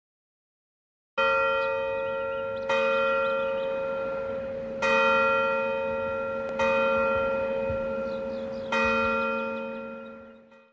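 A single bell, church-bell type, tolling five times at the same pitch, roughly two seconds apart. Each stroke rings on and fades slowly, and the last one dies away near the end.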